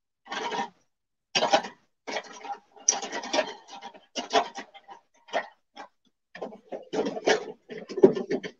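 Scratchy rubbing of a makeup brush worked over skin close to the microphone, in short irregular strokes with brief pauses between them.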